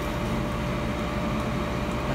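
GoWise USA countertop air fryer running at 360 °F: its convection fan gives a steady whirring hum with a faint steady whine over it.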